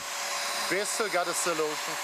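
Bissell PowerWash Lift-Off carpet washer running as it is pushed over a rug: a steady motor whine with the hiss of its suction.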